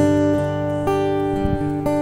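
Acoustic guitar strumming chords, one strum about every second, each chord left to ring.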